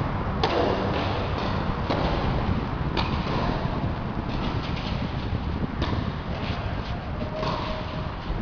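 Tennis ball struck by a racket in a serve about half a second in, the loudest hit, echoing in a large indoor hall. Further racket hits and ball bounces follow as the rally goes on, roughly a second or two apart, over a steady background hum.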